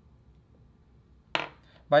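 A chess piece set down with a single sharp clink about a second and a half in, against near silence.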